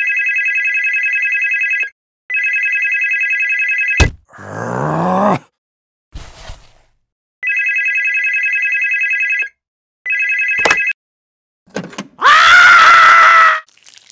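Push-button landline telephone ringing with a fast warbling electronic ring, in four bursts of about two seconds each. There are sharp clicks after the second and fourth rings and a rising groan after the second. Near the end comes a loud, drawn-out cry.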